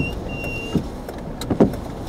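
Car cabin noise while driving: a steady low road and engine rumble, with a few brief thumps and a short high tone about half a second in.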